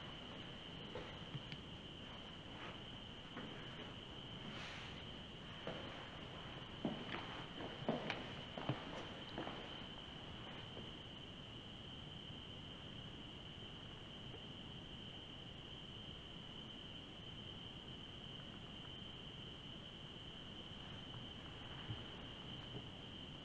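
A faint, steady high-pitched tone that holds throughout, with a run of light clicks and knocks from about four to eleven seconds in, the loudest around eight seconds.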